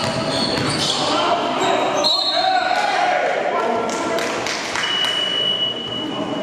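Live game sound of indoor basketball: a ball bouncing on the gym floor, players' voices and short high sneaker squeaks, all echoing in a large hall. A longer high squeal comes near the end.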